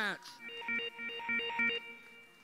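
A short electronic alert of quickly alternating tones, like a ringtone, lasting about a second and a half, played over the arena sound system as the robot match clock passes 30 seconds remaining.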